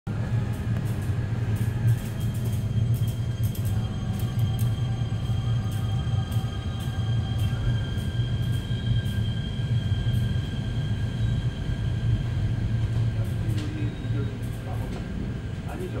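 Seoul Subway Line 4 electric train, a Dawonsys-built set, pulling out of the station: a steady low rumble with several steady electric whine tones from its drive equipment above it. The sound eases off in the last couple of seconds as the train clears the platform.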